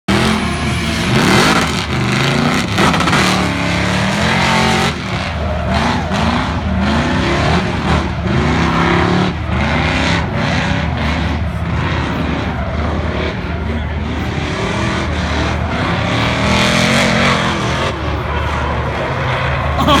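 LS V8 engine of a Ford Mustang drift car revving hard, its pitch rising and falling over and over about once a second as the driver works the throttle through a drift, with tires squealing under the slide.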